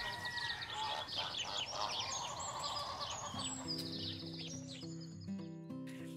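Bird chirps over a short music jingle. Rapid high chirps fill the first half, then low held music notes come in about halfway and carry on as the chirps thin out.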